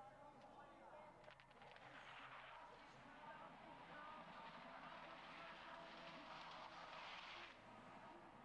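Faint hiss of ski-jumping skis running down the frozen in-run track, building over several seconds and cutting off suddenly near the end at the take-off.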